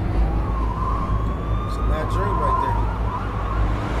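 Emergency-vehicle siren wailing, its pitch rising and falling, over a steady low traffic rumble, heard as a video soundtrack being played back.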